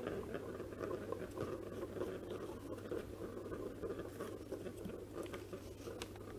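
A plastic draw ball being twisted open by hand and a paper slip pulled out and unrolled: faint, continuous rustling with small clicks and taps, over a low steady hum.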